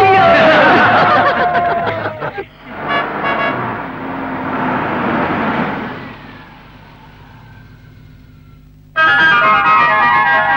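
Film background music that breaks off after about two seconds. A car's engine and tyres follow, swelling and then dying away. The music comes back suddenly near the end.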